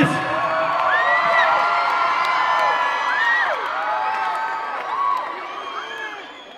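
Concert crowd cheering and screaming once the song has ended: many high voices whoop and shriek over one another, and the noise fades away near the end.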